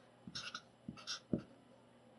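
Felt-tip marker writing digits on paper: several short scratchy strokes with small pauses between them.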